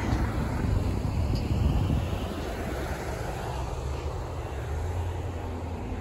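Road traffic on a busy multi-lane street: a steady rumble of passing cars, swelling a little about a second and a half in.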